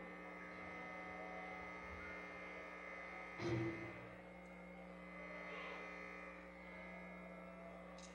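Steady electrical hum, several unchanging tones at once, from an idle live-band amplification rig between songs. About three and a half seconds in there is one short, louder sound.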